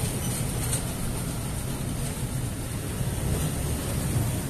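Steady low mechanical rumble with a faint high hiss and no distinct events, like a vehicle engine running nearby.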